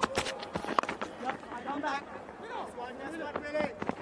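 A single sharp knock of a cricket bat striking the ball about a second in, followed by scattered voices from the field.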